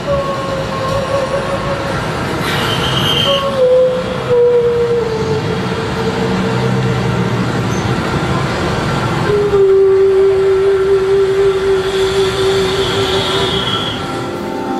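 Free-improvised jazz soundscape: a saxophone holds long notes that step down in pitch over a dense, noisy wash of sound from the rest of the band.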